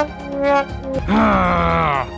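A few short held musical notes, then from about a second in a long cartoon groan that slowly falls in pitch: a knocked-out character's dazed groan.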